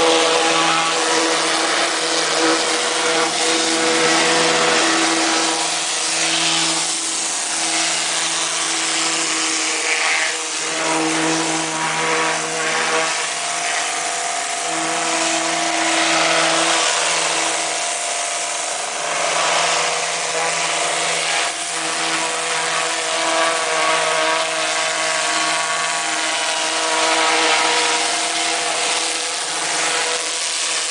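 Cart-mounted industrial electric pressure washer running, its motor and pump giving a steady hum under the loud hiss of the high-pressure water jet blasting marine growth off a fibreglass boat hull.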